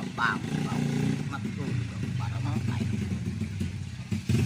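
A motor vehicle engine running steadily in the background, with short bits of low, indistinct speech over it.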